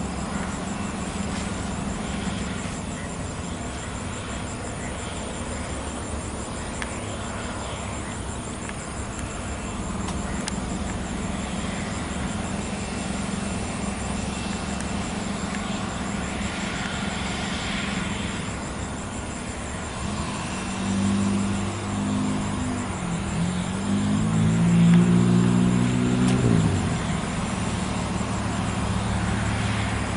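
Steady rumble of a jet airliner taxiing at low power, mixed with distant traffic. A road vehicle's engine comes in close about two-thirds of the way through, rising and falling in pitch for several seconds; it is the loudest sound, and it cuts off near the end.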